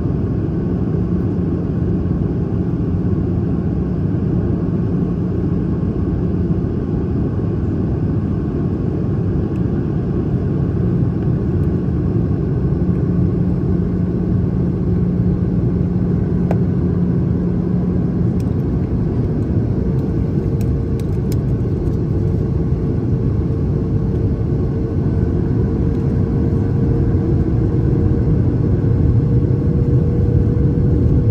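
Steady low roar of a jet airliner's cabin on approach: engine and airflow noise heard from a seat over the wing. A low hum under the roar drops out a little past halfway, a higher steady tone comes in about two-thirds of the way through, and the roar grows slightly louder toward the end.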